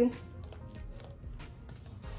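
Faint crackle of printable sticker paper being peeled away from a sticky cutting mat, over soft background music.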